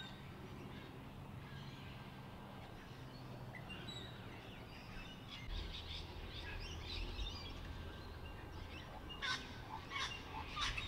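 Faint birdsong: scattered chirps and calls of several birds, with a louder call about nine seconds in, over a low steady rumble.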